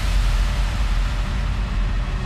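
Electronic dance music in a beatless stretch of the mix: a sustained deep bass note under an even wash of noise, just after a run of drum hits that drop in pitch.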